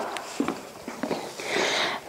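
Soft footsteps on a wooden floor, a few light taps, with a brief breathy hiss near the end.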